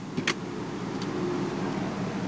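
2007 Cadillac Escalade's power flip-folding second-row seat releasing with a sharp click, then tipping and tumbling forward over a steady mechanical hum.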